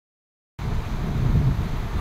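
Wind rumbling and buffeting on a phone microphone outdoors, starting suddenly about half a second in.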